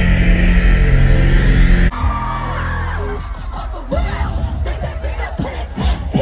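Loud live music with heavy bass over a concert PA, breaking off suddenly about two seconds in. After it, a crowd yelling and whooping over quieter music.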